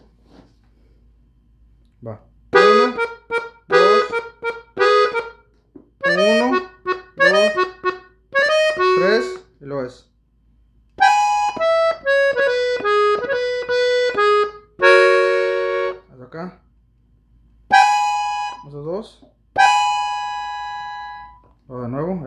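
Gabbanelli three-row button accordion, tuned in E, played on its treble buttons in short bursts of clipped notes. After a pause it plays a stepwise falling run, a full chord, and then longer held notes that die away near the end.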